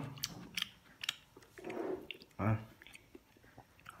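A metal spoon and chopsticks clicking a few times against a ceramic soup bowl, then chewing of a mouthful of fish.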